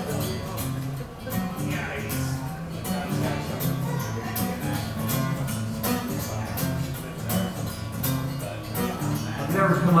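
Acoustic guitar strummed in a steady rhythm, an instrumental passage of chords with no singing.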